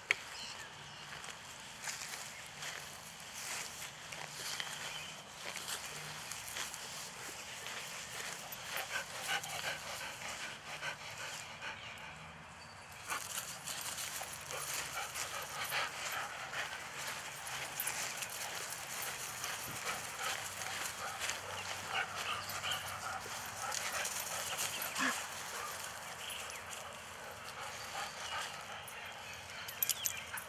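A dog moving about on a grassy lawn outdoors: many small scattered clicks and rustles over a steady background, with a step up in level about thirteen seconds in.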